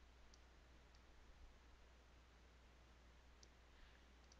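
Near silence over a steady low hum, with about three faint computer mouse clicks as components are selected and dragged into place.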